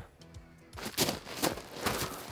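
A brief hush, then irregular crunching of loose river gravel as someone shifts and crouches on it, over soft background music.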